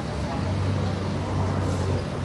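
Outdoor background noise with a low steady hum that sets in about half a second in, under indistinct voices.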